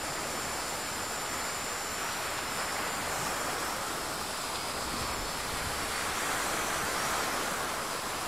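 Steady rushing noise of wind and lake waves on the shore, with a faint steady high whine above it.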